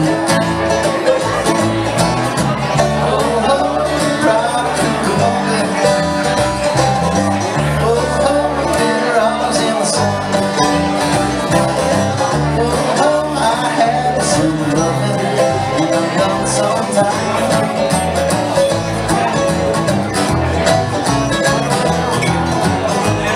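A bluegrass string band playing an instrumental passage: banjo, mandolin and acoustic guitar picking over upright bass, at a steady level throughout.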